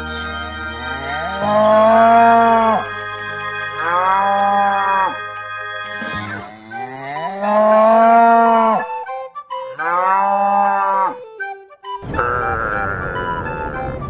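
Cattle mooing: four long, drawn-out moos, each rising and falling, about two and a half seconds apart, over light background music. Near the end there is a short rushing noise.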